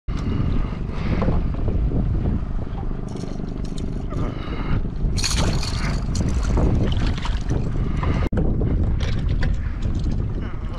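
Boat motor running on open water, with wind buffeting the microphone; the sound drops out for an instant a little past eight seconds.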